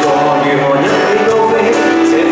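Live band playing a Cantopop ballad: stage piano and guitars under a male lead vocal, amplified through a small PA.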